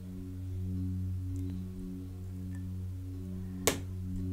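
Ambient background music: a low drone of held tones that swell and fade slowly, with one short sharp click near the end.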